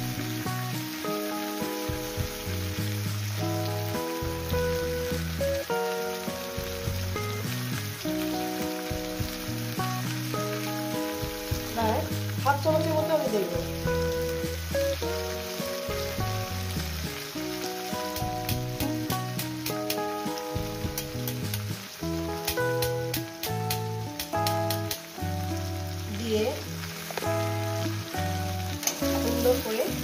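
Mixed vegetables sizzling as they fry in oil in a steel karahi, under background music with steady, changing notes. A run of light clicks comes about two-thirds of the way through.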